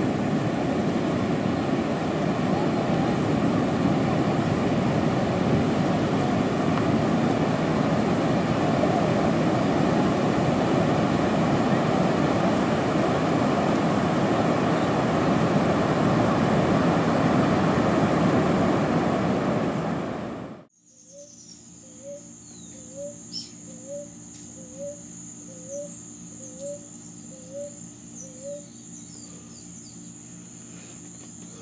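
Heavy ocean surf breaking and rushing up the beach, a loud, steady roar of water. About twenty seconds in it cuts off suddenly to quiet outdoor ambience: a steady high-pitched insect buzz and a short chirping call repeated a little less than twice a second.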